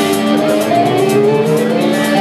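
Live classic rock band playing: a held chord with one note sliding upward in pitch, over steady cymbal strokes from the drum kit.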